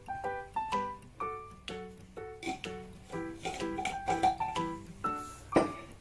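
Background music: a light piano melody of single notes, each struck and dying away, following one another a few times a second.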